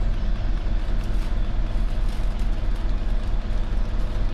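Steady low hum of running machinery, a constant deep drone that does not change.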